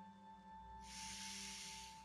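A woman's audible breath close to the microphone, a soft hiss about a second long in the middle, over a faint, steady background music drone.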